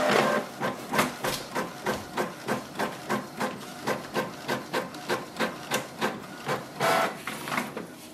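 Canon Pixma G4470 inkjet printer printing a page: a short motor whine at the start, then a regular mechanical clicking of the print carriage and paper feed, about three clicks a second, with a longer whir about seven seconds in.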